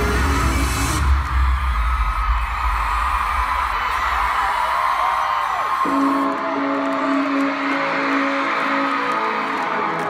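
Live pop-punk band playing in an arena, heard from the crowd through a phone's microphone. The sound changes abruptly about a second in and again about six seconds in, where the clips are cut, and the last part carries a long held note.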